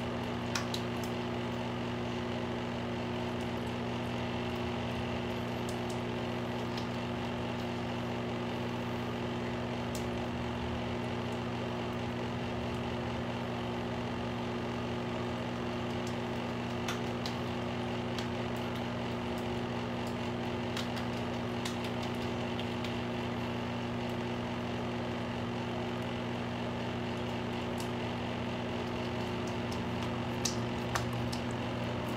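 A steady machine hum holding several constant low pitches, with a few faint clicks over it.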